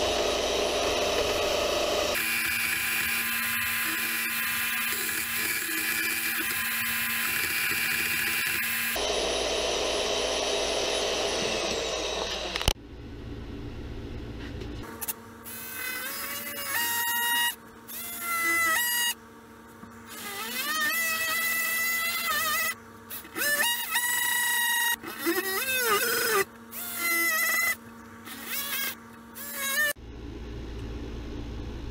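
A portable band saw running and cutting into the steel blade of an oscillating multi-tool, its sound changing as the blade bites; it stops abruptly about 13 seconds in. After that an oscillating multi-tool buzzes in a string of short bursts, rising and falling in pitch as it cuts into a wooden board.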